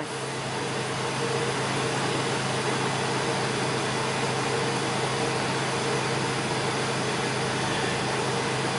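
Jeep Wrangler TJ engine idling steadily at about 1,050 rpm just after a cold start, heard from inside the cabin, with a steady even hiss over it.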